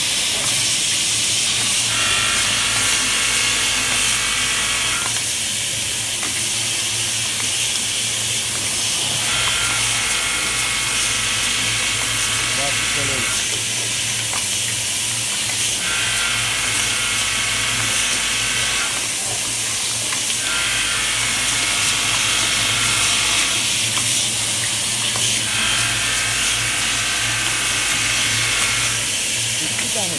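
Play dough jar capping machine running: a steady hiss over a motor hum, with a low drone and a higher whine taking turns every three to four seconds.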